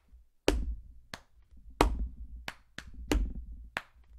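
Body-percussion beat: a hand tapping a wooden tabletop for the high sound and a hand patting the chest for the low sound. About seven sharp strokes fall in a steady pattern that repeats roughly every 1.3 seconds, with one heavier, deeper stroke leading each repeat.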